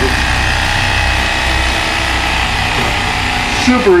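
Electric carving knife running steadily, its reciprocating blades sawing through the wax cappings on a frame of honey to uncap it for extraction.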